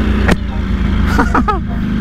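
Motorcycle engine running steadily with wind noise. A sharp click about a third of a second in as the Shoei RF-1400 helmet's face shield is snapped, and a short laugh about a second and a half in.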